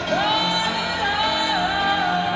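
Film soundtrack song played through cinema speakers: a singer swoops up into a long held note, then steps down to a lower held note about one and a half seconds in, over steady accompaniment.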